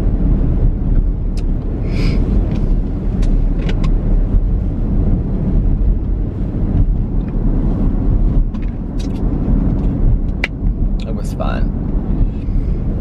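Car driving, heard from inside the closed cabin: a steady low rumble of engine and road noise, with a few short clicks.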